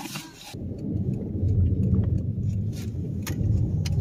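Car driving slowly, heard from inside the cabin: a steady low engine and road rumble that comes up about half a second in, with a few light clicks.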